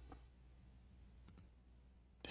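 Near silence: faint room tone with a few soft clicks, one just after the start and two close together past the middle.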